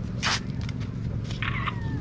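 Dry cornstalks and leaves crackling and rustling as people walk past them, with one sharp crackle a moment in, over a steady low rumble.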